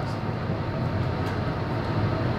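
A pause in the talk filled only by a steady low background noise in the room, an even rumble with no distinct events.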